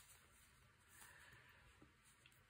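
Near silence: room tone, with faint soft handling of crocheted yarn gloves being turned inside out, a little louder about a second in.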